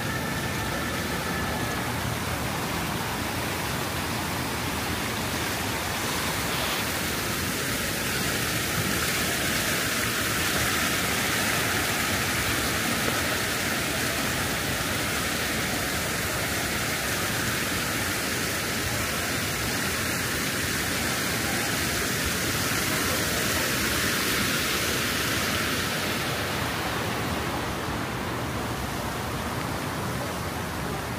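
Splashing water of an outdoor fountain and cascading water feature: a steady rushing hiss that grows louder through the middle and fades near the end.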